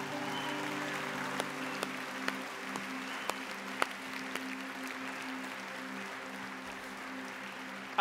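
A congregation applauding, a dense patter of claps that slowly thins out, over a held low chord from the worship band.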